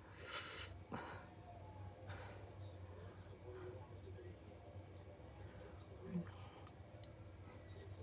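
Faint scratching and small rustles of fingertips picking at the edge of a dried peel-off gel face mask, which is coming away only in little pieces, over a steady low room hum. There is a short hiss just after the start and a click about a second in.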